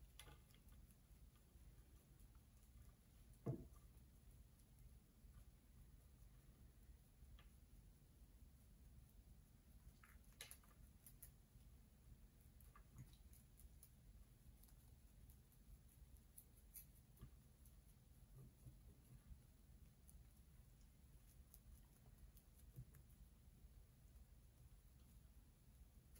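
Near silence, with faint, scattered scratches and ticks of a wooden chopstick raking soil off a bonsai's root ball, and one soft knock about three and a half seconds in.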